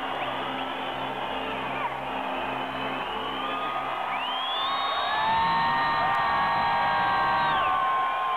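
Arena crowd cheering, yelling and whooping over a live rock band. About halfway in, long high held notes rise above the cheering and it grows louder.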